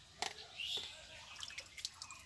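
Water sprinkled by hand onto cumin seeds on a flat stone grinding slab, dripping and splashing faintly, with a few small sharp knocks.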